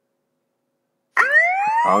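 An anti-theft app's siren alarm sounding from an Android phone, set off in proximity (pocket) detection mode. It starts suddenly about a second in as a rising wail, and speech joins near the end.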